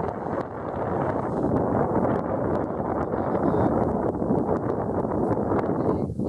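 Wind buffeting the camera's built-in microphone: a steady, dense noise with no clear pitch.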